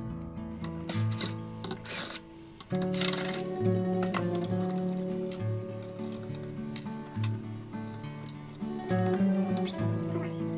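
Background acoustic guitar music, with three short whirs of a cordless electric screwdriver in the first few seconds as it backs out screws holding a power-supply board.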